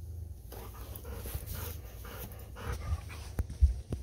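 Golden retriever panting in quick repeated breaths close by, with a couple of sharp knocks near the end.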